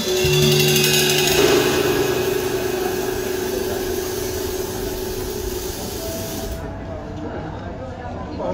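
A drum kit, bass and acoustic guitar trio ends a song on a final held chord. A cymbal is struck and rings out with the bass and guitar notes, all fading slowly over several seconds.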